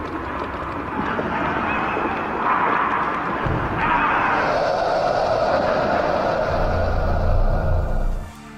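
Horror-trailer sound design: a swelling din of harsh, shrieking voices from a zombie horde, with a deep rumble building beneath it in the second half, cutting off suddenly at the end.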